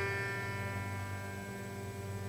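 Grand piano strings ringing and slowly dying away after a note sounded just before, rich in overtones, over a held low bass tone.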